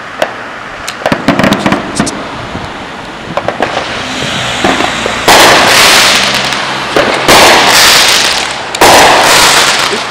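Fireworks going off: scattered sharp pops in the first half, then, from about five seconds in, three loud bursts that each start suddenly and fade over a second or two.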